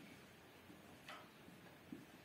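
Near silence, with a few faint ticks and a short scratch about a second in from a marker drawing lines on a whiteboard.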